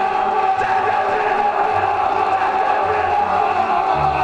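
A man's long, drawn-out wail, one high note held without a break and sinking slightly at the end, over background music.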